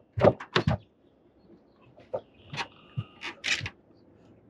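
Handling noises in a small boat as a freshly caught fish is dealt with: a quick run of sharp knocks in the first second, then a short squeak with a few clicks about three seconds in.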